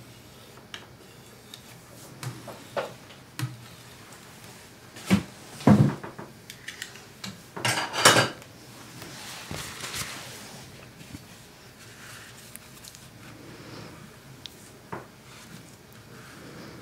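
A scraper scraping dried acrylic paint off a glass palette, with light taps and clicks and a few louder scraping strokes around the middle, then a paper towel rubbing across the glass.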